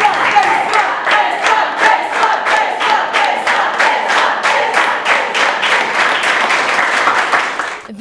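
A classroom of students clapping and cheering, shouting voices mixed into the applause; the clapping falls into a steady rhythm and cuts off abruptly just before the end.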